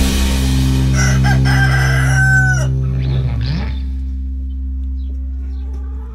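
A rooster crows once, starting about a second in and lasting about a second and a half, over a held low music chord. The chord fades out near the end.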